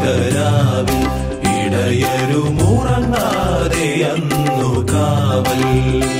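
Malayalam Christmas carol song: a singing voice over a band backing of bass and percussion, with a steady beat.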